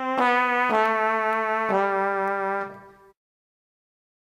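A recorded MIDI part playing back through a brass-like synthesizer sound: a slow line of held notes stepping downward, the last one fading out about three seconds in.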